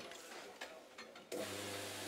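Faint clicks and creaks of a golf club loft-and-lie bending machine as a wedge head is clamped tight in it, with a steady low hum coming in sharply partway through.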